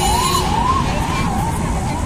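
Emergency-vehicle siren rising and falling quickly, two or three swells a second, over the low rumble of road traffic.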